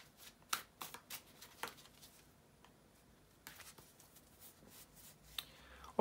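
A deck of tarot cards handled and shuffled by hand: faint, scattered flicks and clicks of card against card, with a pause of about a second and a half in the middle and softer rustling after it.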